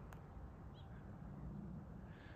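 Quiet outdoor street ambience: a faint steady low rumble, with one brief, faint bird chirp a little under a second in.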